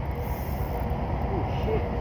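Steady low rumble of wind buffeting the phone's microphone, with a faint thin hum and a couple of faint short sounds near the end.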